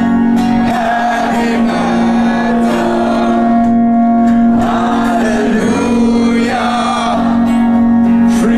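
Live metal band playing, with sung vocals over acoustic guitar and a long held note underneath.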